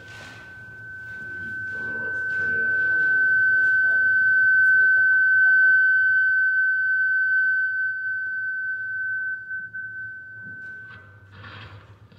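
A single steady high-pitched ringing tone from the church's sound system, typical of microphone feedback. It swells for about five seconds, then fades and cuts off about eleven seconds in, with a few faint voices underneath.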